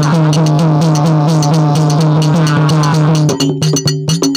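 Devotional bhajan music: a long held sung note over a hand drum and small brass hand cymbals (manjira) keeping a steady beat. The held note breaks off a little over three seconds in, leaving the drum and cymbal strokes.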